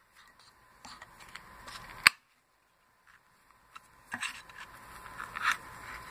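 Pull tab of a small aluminium drink can being worked and snapped open: one sharp click about two seconds in, then, after a silent gap, lighter clicks and scraping of the tab against the lid.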